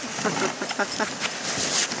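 Dog sled running over snow behind a husky team: a steady hiss with a string of short scrapes and knocks.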